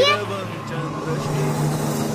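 A girl's spoken word cuts off at the start. Then comes a low, steady drone under a hissing wash from the serial's background score.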